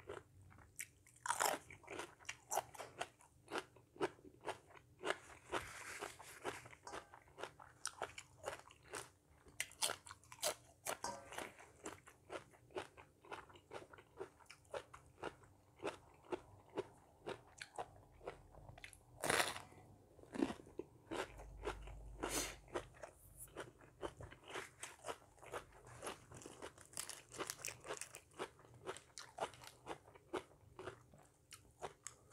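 A person biting and chewing crunchy raw vegetables, cucumber and lettuce among them: a steady run of crisp crunches, with a few louder bites about two-thirds of the way through.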